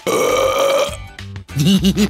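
A long cartoon burp lasting about a second, followed about half a second later by the character's laughter, over background music.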